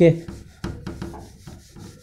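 A whiteboard eraser rubbing across a whiteboard in a series of short back-and-forth wiping strokes.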